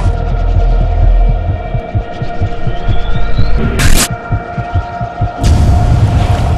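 A loud, steady hum with irregular low throbbing beneath it, broken by a short burst of hiss just before four seconds in and another starting near the end.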